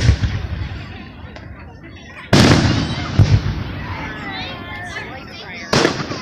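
Aerial firework shells bursting overhead: a sharp bang at the very start, the loudest about two and a half seconds in with a second crack close after it, and another bang near the end, each trailing off in a rumbling echo.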